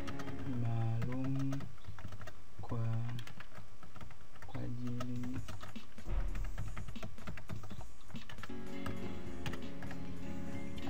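Fast typing on a computer keyboard, a quick run of key clicks. Background music and a low voice come in now and then.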